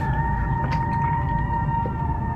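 Background music in the film's score: one sustained high note held steady over a low, continuous bass rumble.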